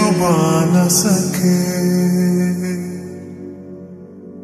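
Slowed-and-reverb Hindi Christian worship song: a drawn-out sung line over held low notes in the first second or so, then the music fades, growing quieter and losing its treble toward the end.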